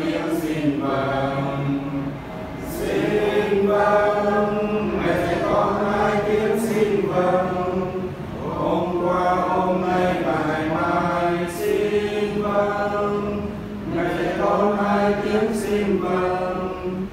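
A small group of voices chanting a Catholic prayer together in unison, in long sung phrases with short breaks between them.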